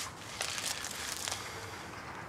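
Thin plastic water bottle crinkling as a hand squeezes it, a run of small crackles lasting about a second.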